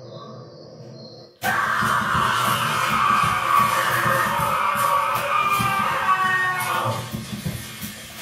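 Monster scream sound effect of a bush-disguised Halloween animatronic as its jump scare triggers: it cuts in suddenly about a second and a half in, holds loud for about five seconds, then tails off near the end.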